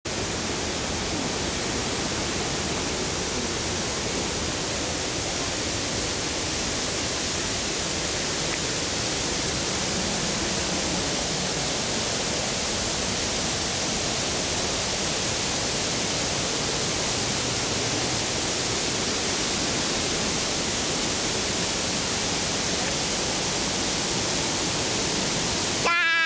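Steady rushing of a waterfall: an even, unbroken hiss of falling water.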